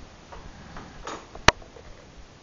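A brief rustle of a hand rubbing a dog's fur, then one sharp click about one and a half seconds in.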